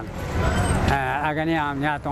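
Street traffic noise, a low rumble of road vehicles, fills about the first second, then a man's voice takes over.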